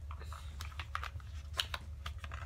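Plastic packaging of a brush set being handled and pried open: a scattering of small, sharp clicks and light crackles.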